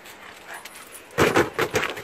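Young Doberman making a quick run of short, excited vocal sounds a little past halfway, after a quieter first second.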